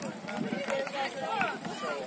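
Several voices talking and calling out at once, overlapping at a moderate level: the chatter of players and onlookers around a sand court.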